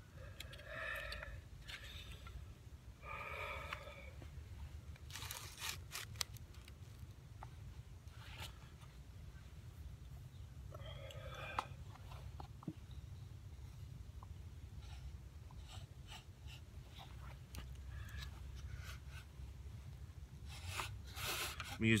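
Light wooden clicks and knocks as a yucca spindle and hearth board are handled and set in place for a friction fire, over a low steady rumble of wind.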